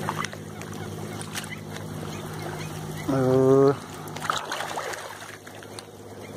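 A man's voice making one drawn-out, wordless hesitation sound of about half a second, around three seconds in, over a faint steady low hum.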